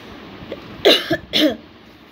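A woman coughing twice, the two coughs about half a second apart, about a second in.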